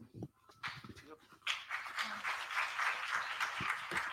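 Audience applauding, starting faintly about half a second in and growing fuller about a second and a half in.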